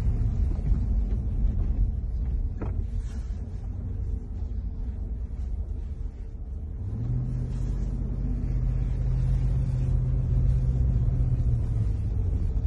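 Car cabin rumble from engine and tyres while driving slowly over a rough dirt road. About seven seconds in, a steady engine hum sets in and the sound gets louder.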